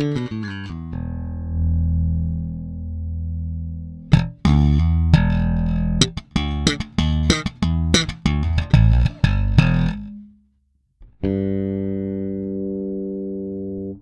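Maruszczyk Elwood L4a-24 electric bass with Delano JSBC 4 HE pickups and Sonar 2 electronics, both pickups on and the bass and treble boosted. It plays a few quick notes and a held low note, then about six seconds of busy, sharply percussive slapped notes, stops for a moment, and ends on one long ringing note.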